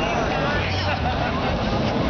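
Several people talking and calling out over one another, with a car engine running low and steady underneath.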